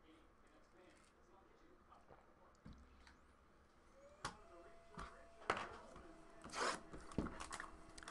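Mostly quiet room tone. In the second half come a few faint, separate clicks and knocks, with a faint steady hum under them.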